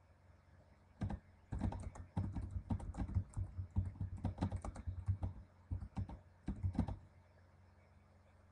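Typing on a computer keyboard: a run of quick, uneven key clicks starting about a second in and stopping about a second before the end.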